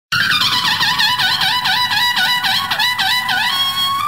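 Intro of a karaoke backing track: a single high instrumental tone warbling in quick repeated dips of pitch, about four or five a second, then settling onto one held note near the end.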